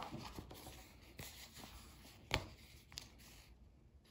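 Faint rustling and scratching of contact paper being handled and pressed on, with a few light clicks, the sharpest a little past two seconds in.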